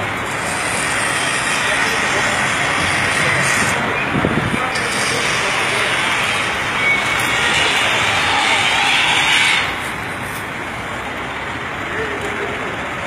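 Busy street noise at a minibus stage: steady traffic sound mixed with indistinct background voices, easing somewhat about ten seconds in.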